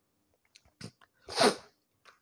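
A few faint clicks, then one short, sharp breathy burst from a man's nose or throat about a second and a half in, sneeze-like, between his spoken sentences.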